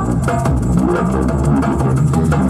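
Acoustic ethno-breakbeat groove: a low male vocal bass line over darbuka and shaker, with the high sung mantra melody dropping out.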